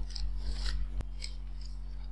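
A few faint, short rustling scrapes and one sharp click about a second in, over a steady low electrical hum.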